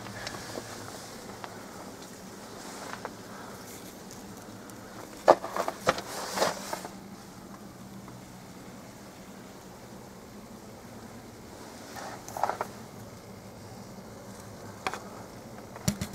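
A few short crunches and knocks, a cluster about five to seven seconds in and more near the end, typical of footsteps on ice and snow, over a steady low hum.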